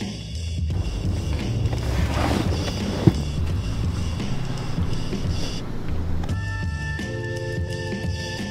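Background music with a steady bass beat. Under it, skateboard wheels roll on asphalt until about six seconds in, with one sharp click about three seconds in.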